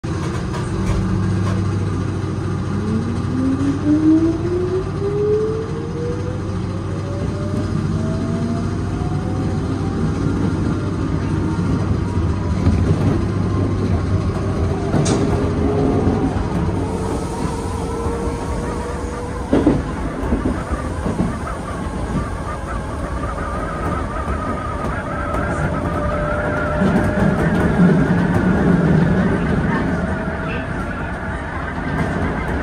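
Keisei 3400-series electric train pulling away and accelerating, heard from inside the driver's cab: the traction motors' whine climbs steadily in pitch over the running noise of wheels on rails. A couple of sharp clicks as the wheels cross rail joints come about halfway through.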